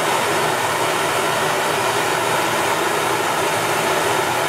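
Blowtorch flame burning with a steady hiss as it heats a stainless steel wire.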